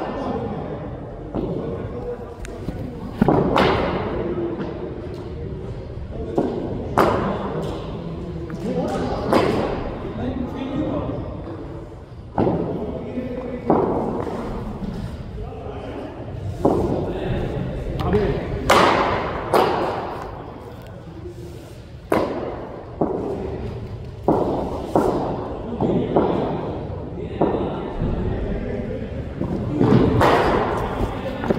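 Cricket balls being struck and thudding into the nets and turf of an indoor practice hall: a string of sharp, irregular knocks every second or few, echoing in the large room.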